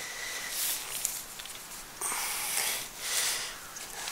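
Fabric of a Granite Gear Lutsen 55 backpack's roll-top closure rustling and swishing in a few swells as it is rolled down tight by hand.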